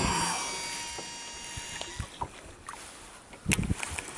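Shimano Exsence DC baitcasting reel's spool spinning out on a cast, with the high whine of its digital (DC) braking system, set to its fluorocarbon (F) mode. The whine fades out about two seconds in as the lure lands, followed by a few clicks and a louder knock near the end.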